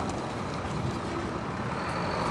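Steady outdoor road-traffic noise, an even rush with no distinct events.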